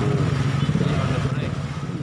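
A motor vehicle engine running close by with a steady low, rough rumble that eases off slightly near the end.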